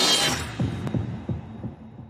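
Logo-reveal sound effects: a whoosh swells to a peak at the start and dies away within half a second. About five deep thuds follow, each dropping in pitch, with a sharp click just before a second in, all fading out.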